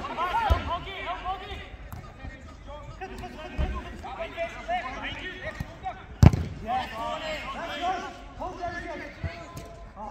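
A football being kicked on an artificial-turf pitch: a few dull ball strikes, with the loudest sharp kick a little past the middle. Players' shouts and calls run underneath throughout.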